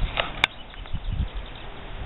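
Outdoor camcorder sound: irregular low rumbling and thumps of wind and handling on the microphone while walking, with a brief high chirp and one sharp click in the first half second.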